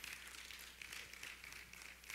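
Near silence: room tone with a faint steady low hum and a few tiny ticks.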